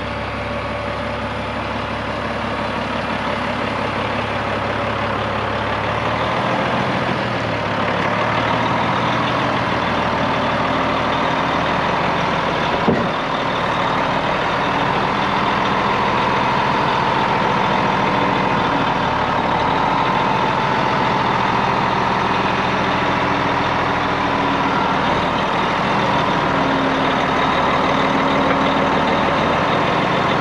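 Diesel engine of a 2004 Sterling plow/spreader truck idling steadily, getting louder as the microphone moves up along the truck toward the cab, with one brief click about thirteen seconds in.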